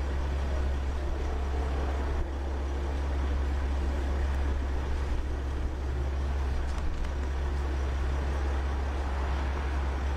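Van engine idling, a steady low rumble with road-noise haze.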